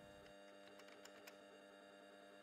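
Near silence: a faint steady electrical hum of room tone, with a few faint clicks in the first half.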